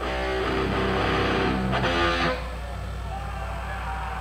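Electric guitar played through an amplifier for about two seconds, its notes shifting, then cutting off suddenly. A steady low hum runs underneath.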